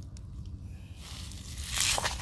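A barnacle-crusted beach rock being gripped and lifted off the shell-and-pebble gravel: a rough scraping rustle that builds from about a second in and is loudest near the end, over a low rumble.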